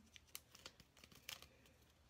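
Faint crinkling and a few small clicks of a plastic card protector being handled as a trading card is slid out of it.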